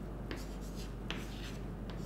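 Chalk writing on a chalkboard: a few short, faint scratching strokes as numbers are written, over a low steady hum.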